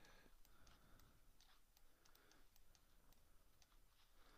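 Near silence: room tone with faint, scattered computer mouse clicks while a 3D mesh is being edited.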